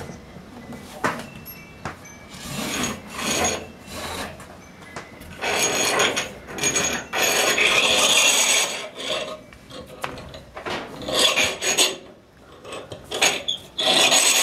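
Rope being hauled by hand through a loft pulley, rasping and rubbing in irregular strokes, the longest about halfway through.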